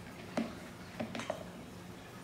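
Quiet kitchen handling sounds over a low steady hum: a few soft clicks as a matzo ball is set down on a plate and the next one is rolled from the batter between wet hands.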